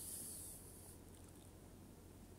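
Very faint fork stirring wet flour batter in a glass bowl. A soft hiss fades out over the first second, leaving near silence.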